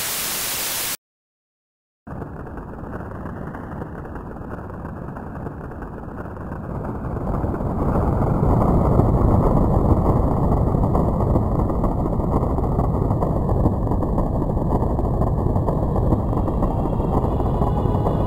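About a second of TV static hiss, then a second of silence, then a low rumble that swells about six seconds in and holds steady. Faint musical tones come in near the end.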